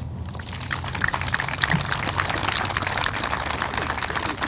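Audience applauding, a dense patter of many hand claps that picks up about half a second in.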